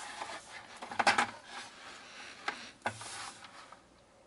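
A plastic paper trimmer and a strip of cardstock being handled and slid into place on a cutting mat, giving scraping and rubbing noises about a second in and again near the end, with a sharp click in between.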